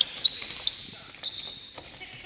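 Futsal players' shoes squeaking on a wooden gymnasium floor, a run of short high squeaks, with a sharp knock about a quarter second in.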